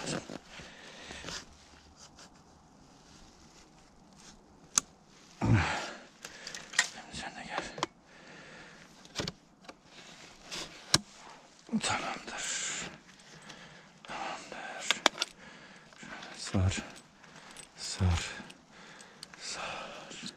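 Intermittent clicks, clinks and rustling as a Garrett metal detector is handled and its shaft adjusted shorter, plastic and metal parts knocking together.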